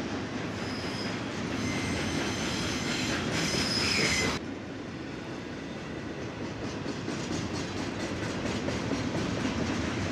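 Double-stack intermodal freight train rolling past: a steady rumble of the well cars, with a thin, high wheel squeal in the first few seconds that stops suddenly about four seconds in. The rest is a quieter rumble with a regular clatter of wheels over rail joints.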